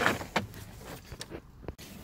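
A few small clicks and knocks with low handling noise: a grabber tool being worked against plastic dash trim to latch onto a cable.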